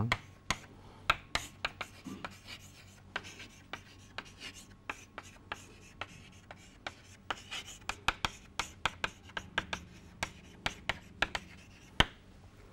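Chalk writing on a blackboard: a steady, irregular run of short sharp taps and scratches, several a second, as a line of words is chalked out.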